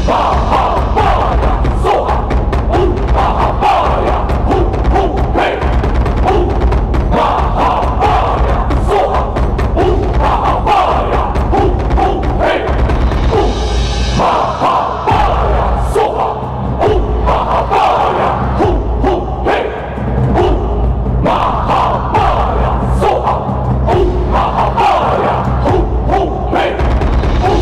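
Many voices chanting a Buddhist mantra together over music, with a steady beat of drum and percussion strikes.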